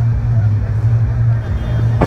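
A steady low hum under a background haze of outdoor noise.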